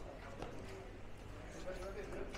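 Footsteps on stone-tiled paving, a few sharp taps, over faint indistinct voices and a low steady hum.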